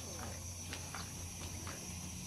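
Insects droning steadily on one high pitch, with a few faint, short chirps that fall in pitch.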